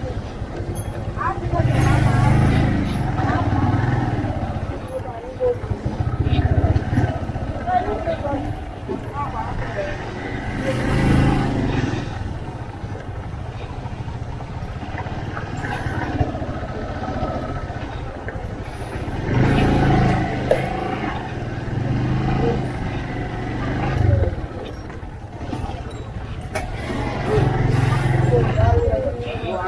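Motorcycle engine running as the bike rides slowly, its low rumble swelling and easing every few seconds, with people's voices around it.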